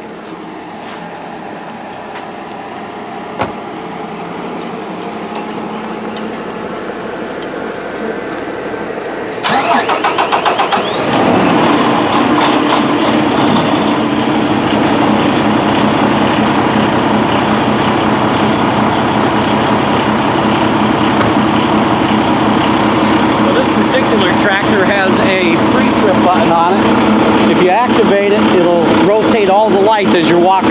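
Kenworth T680 semi-truck's diesel engine being started: about nine seconds in the starter cranks it with a rapid pulsing for a second or so, then it catches and settles into a steady idle.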